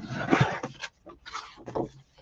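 A bone folder rubbed hard along the fold of a cardstock card base to burnish the crease: a scraping, rubbing sound in a few strokes, the longest at the start, followed by a brief rustle of the card being handled.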